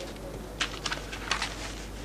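Paper rustling as sheets are passed across a desk and handled, a few short crisp rustles, over a low steady hum.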